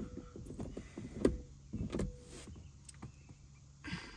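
Small clicks and taps of an 8 mm metal bolt and socket being handled as the bolt is unscrewed by hand from a car's rear-deck speaker mount, the sharpest tap about a second in. A faint low hum runs underneath in the second half.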